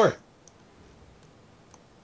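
A spoken word ends, then a quiet pause holding two faint clicks, one about half a second in and one near the end.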